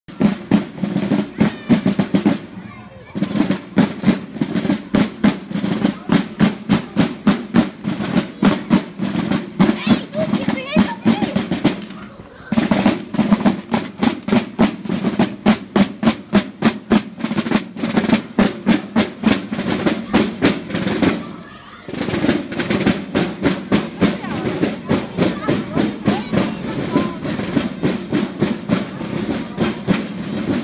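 Snare-type marching drum beaten with sticks in a steady march cadence of rapid strokes and rolls. It stops briefly three times, like phrase breaks.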